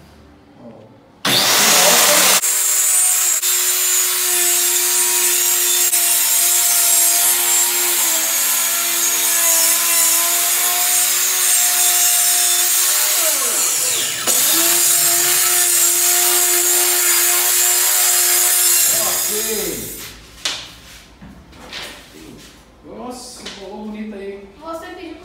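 Bosch handheld marble saw (serra mármore) fitted with a toothed wood blade, cutting through a sheet of marine plywood. It starts abruptly about a second in and runs under load with a steady whine. Around the middle its pitch drops as the motor briefly slows, then it comes back up to speed, and near the end it spins down and stops.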